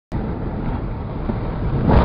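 Bobsleigh running down an ice track: a steady rumble and hiss from the sled sliding over the ice.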